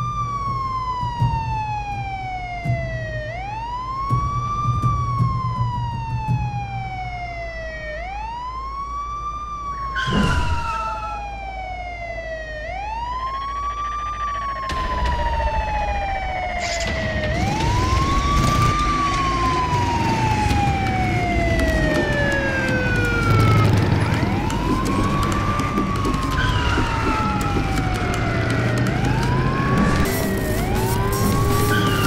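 Siren wailing in slow cycles, each rising quickly and then sinking slowly, about every four seconds. About ten seconds in, a brief whoosh passes. From about fifteen seconds a low rumble joins beneath the siren and the whole grows louder.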